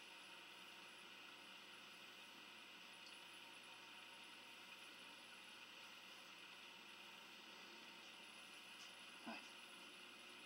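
Near silence: steady room tone with a faint hiss, broken by one brief faint sound near the end.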